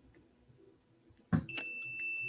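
A handheld electronic gem tester beeping: a short click, then a steady single high-pitched beep that begins about one and a half seconds in and is still sounding at the end. The beep goes off as the probe touches something rather than the stone alone.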